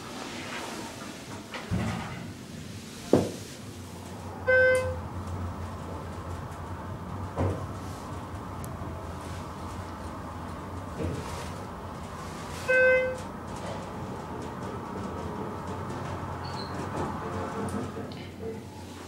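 Schindler 330A hydraulic elevator on an upward run: a steady low hum of the car in motion sets in about two seconds in, with sharp clunks around three and seven seconds. Two short electronic chime tones sound about eight seconds apart.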